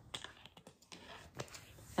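Several faint, irregular clicks, the loudest about one and a half seconds in.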